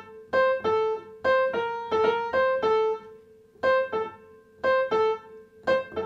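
Upright piano playing a short right-hand phrase of detached single notes rocking between C and A like a cuckoo call, with a pause about halfway through. The staccato notes are held on rather than cut short: the less crisp way of playing them.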